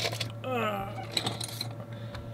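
A brief falling vocal murmur, then a few light clicks as small screwdrivers are handled, over a steady low hum.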